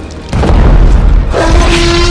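A deep boom hits about a third of a second in, over background music. A steady, held pitched tone with several overtones joins about a second and a half in.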